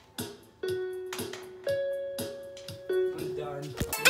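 A few keyboard notes played one at a time, each held for about half a second to a second, with soft clicks between them. They stop abruptly just before the end.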